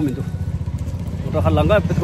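Motorcycle engine running, with a low pulsing drone that grows louder about one and a half seconds in.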